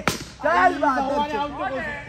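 A cricket bat strikes a tennis ball with one sharp crack at the very start, followed by players shouting loudly.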